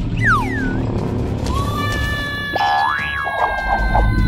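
Cartoon sound effects over background music: a quick falling whistle-like glide near the start, then a long held whistling tone that begins a third of the way in, with a fast rising boing-like glide in the middle and a brief warble near the end.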